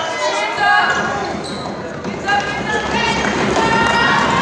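Basketball game sound in a gym: several voices of players and spectators calling out over one another, with a basketball bouncing on the hardwood floor.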